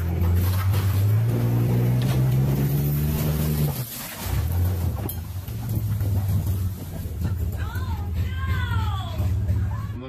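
A vehicle engine running hard under load, its pitch rising for a few seconds before it drops off and then runs on steadily, as it pulls an old wooden shed over. People whoop and shout near the end.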